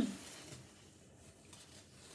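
Faint rustling of curtain fabric as a tie is wound around a gathered curtain, in an otherwise quiet small room, with one small tick about half a second in.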